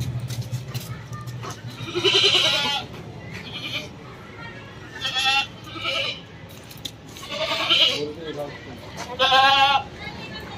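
Goat bleating repeatedly: a series of about five wavering, quavering bleats a second or two apart.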